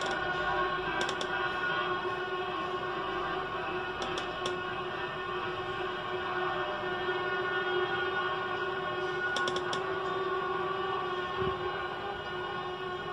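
Many vehicle horns sounding together from the street in a long, steady blare of several held tones, kept up without a break; a few faint clicks sound over it.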